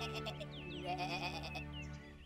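A sheep bleating with a wavering, quavering call, once at the start and again about a second in, over gentle children's background music.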